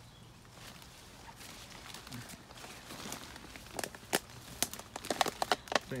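Footsteps pushing through dense undergrowth, with twigs snapping and leaves rustling; the snaps come quicker and louder over the last few seconds.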